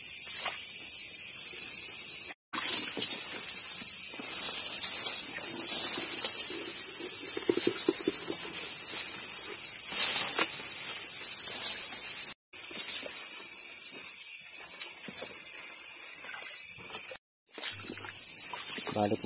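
Night insects holding a steady, loud, high-pitched chorus. It drops out completely three times, briefly: about two, twelve and seventeen seconds in.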